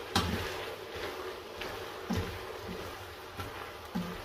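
Kitchen tongs tossing spaghetti in a steaming pot. The sound is soft, with a sharp click just after the start and a few faint knocks of the tongs against the pan over a low, steady hiss.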